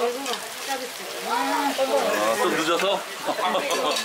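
Mostly speech, over a steady sizzle from a hot pan of meat and tripe cooking on a gas burner.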